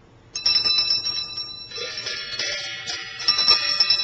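Small metal bells struck about four times, starting about a third of a second in. Their high, bright tones ring on and overlap one another.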